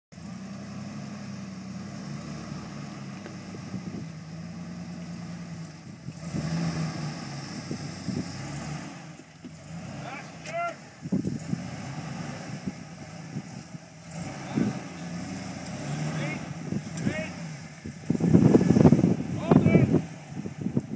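Jeep Wrangler engine running at low revs as the Jeep crawls over rock, with swells in revs from about six seconds in. The sound gets loudest over the last two seconds.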